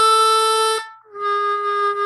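Harmonica playing two held notes of about a second each, with a short break between them. The first is a B (si), and the second is the same note lowered by a semitone to B-flat.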